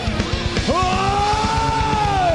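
Live heavy metal band playing, loud. A long held lead note slides up about half a second in and holds high over distorted guitars and a fast, pounding drum beat.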